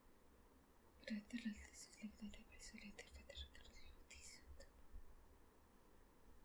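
Soft whispered speech between about one and four and a half seconds in, otherwise near silence.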